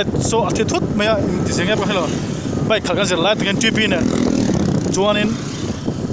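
A person talking over the steady running of motorcycles and road noise.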